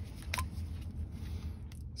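A pen being picked up off the bench, with one sharp click about a third of a second in and a few faint ticks of handling, over a low steady hum.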